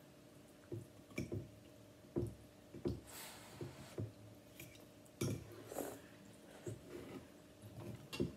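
Quiet eating sounds from bowls of ramen: a scattered series of short clicks and clinks of chopsticks and a fork against ceramic bowls, with a couple of longer hissy slurps of noodles about 3 and 5 seconds in.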